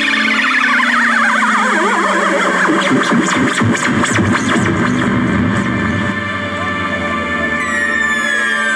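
Live electronic music: synthesizer tones sliding downward and wavering in pitch over a sustained low drone, with a new set of falling high tones entering near the end.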